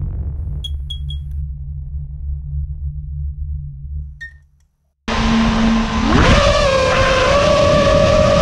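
A low rumbling intro sound effect with a few short high chirps, fading out to a brief silence. About five seconds in, the quadcopter's four Brother Hobby 2306 2450KV brushless motors spin up on the ground with a steady whine that rises in pitch about a second later as the throttle comes up, then holds.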